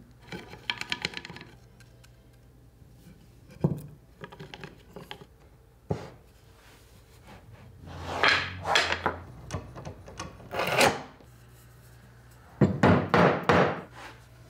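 Walnut table parts, wooden clamp blocks and bar clamps being handled on a workbench during a glue-up: scattered knocks and rubbing of wood on wood and on the bench top. A quick run of loud knocks near the end.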